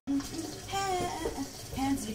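Water running from a kitchen tap, with a woman's voice singing and speaking over it in short phrases.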